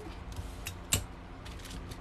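Hands handling an aluminum-foil-wrapped sock jig on a table: faint light clicks and rustles, with one sharper tick about a second in.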